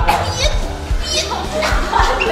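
Excited voices of several people calling out over background music with a steady low line.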